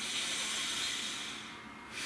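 A man's deep breath through the nose, a long airy rush that fades out about a second and a half in.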